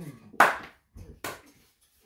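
Two hand claps a little under a second apart, a slow clap of approval while eating, the second softer than the first. A hummed "mm" of enjoyment comes just before the first clap.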